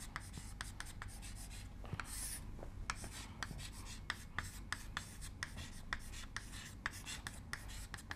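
Chalk writing on a chalkboard: quick, faint taps and scratches as each letter stroke is made, with a longer scrape about two seconds in.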